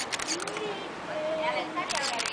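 Voices of a crowd of children, with a run of sharp clicks in the first second and another at the end.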